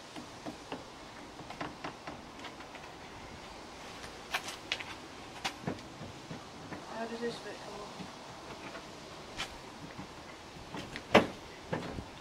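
Scattered clicks and knocks of plastic front-bumper trim and clips on a Honda Civic Type R EP3 being handled and worked loose by hand, with a sharper knock near the end.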